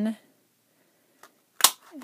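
A handheld Stampin' Up word window punch snapping down once through folded cardstock: a single sharp click near the end, with a faint click a little before it.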